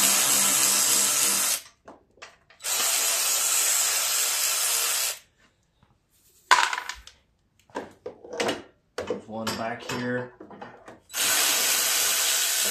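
Handheld cordless power tool with a socket running in three spells of a couple of seconds each as it backs out 10 mm bolts. The first spell stops about a second and a half in, the second runs from about three to five seconds, and the third starts near the end, with scattered clicks and knocks of parts being handled in between.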